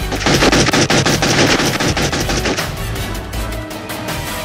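Gunfire: a rapid burst of many shots in quick succession lasting about two and a half seconds, over background music.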